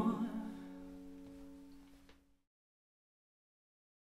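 The last strummed chord on an acoustic guitar ringing out and dying away, gone about two seconds in.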